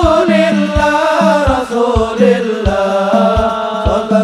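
Amplified sholawat, Islamic devotional singing with a gliding melodic line, over a deep drum beating steadily about every three-quarters of a second.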